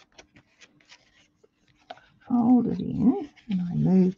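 Soft clicks and rustles of cardstock being pressed down and folded by hand, then, about two seconds in, a loud vocal sound with a rising and falling pitch, followed by a second one shortly before the end.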